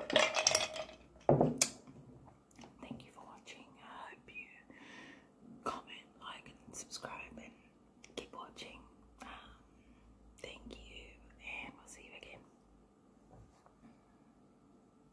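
A plastic water bottle crackles and knocks as it is lowered and set down. Then a woman whispers softly for about ten seconds.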